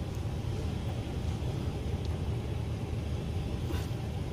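Steady low mechanical hum, like a motor or engine running, with a faint tick near the end.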